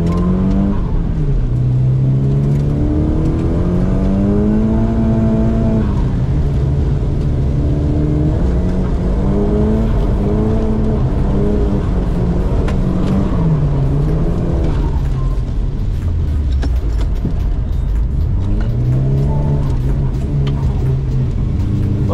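Nissan S15 Silvia's engine heard from inside the cabin while drifting on a wet track, its revs climbing and dropping again and again as the throttle is worked through the corners.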